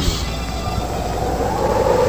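Steady rumbling noise with a faint tone wavering slowly upward, heard on an old AM radio broadcast recording.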